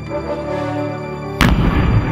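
Background music with a single loud boom about one and a half seconds in, a firework shell bursting, followed by a low rumble.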